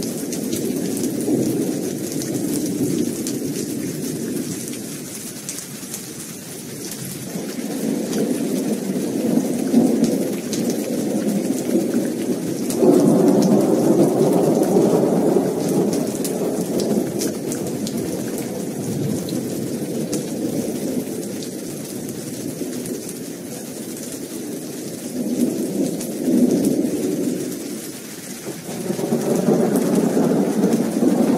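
Steady heavy rain hissing, with rolling thunder rumbling in several long swells. The loudest roll starts suddenly a little before the middle.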